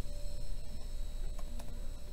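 A few faint clicks from a laptop's keys or trackpad being tapped. Under them, a steady high-pitched electronic whine starts right at the beginning, over a low room hum.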